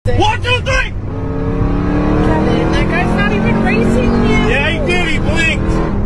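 Steady engine and road noise of a lorry and car travelling at highway speed. Three bursts of short, rising-and-falling calls sound over it: near the start, in the middle, and near the end.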